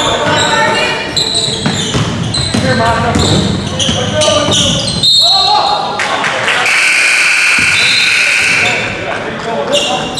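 Gym sounds of a high school basketball game: a basketball bouncing on the hardwood floor amid shouting voices, echoing in the large hall. About two-thirds of the way through, a steady high tone is held for about two seconds.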